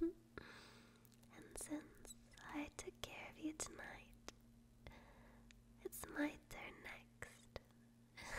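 A young woman whispering close to the microphone in several short, breathy phrases, with small sharp clicks between them.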